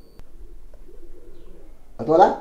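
A bird calling faintly in the background: low, wavering calls.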